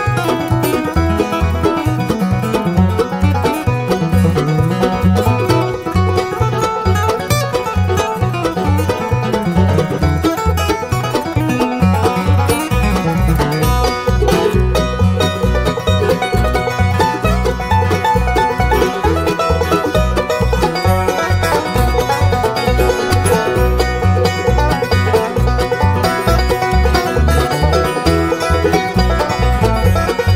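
Instrumental break in a bluegrass song: banjo to the fore over guitar and a steady string-bass line. The bass grows heavier about halfway through.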